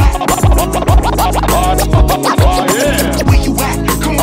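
Turntable scratching over an electronic backing track: quick swooping scratch strokes ride over a steady kick-drum beat of about two hits a second.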